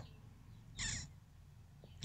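A single short, harsh caw-like call about a second in, over faint room tone.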